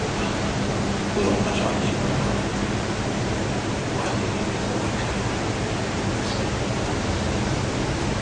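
Steady background hiss with a low, even hum and no speech, with a few faint brief hisses.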